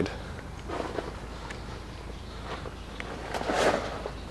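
Soft shuffling movement sounds. There is a faint one about a second in and a louder, half-second one near the end, over a steady low rumble.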